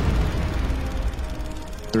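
Background music with a deep low rumble underneath that fades away over the two seconds.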